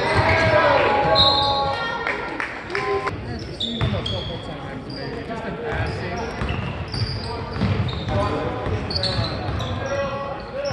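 Indoor basketball game: a basketball bouncing on a hardwood court and sneakers squeaking in short high chirps, with players and spectators calling out, all echoing in a large gym.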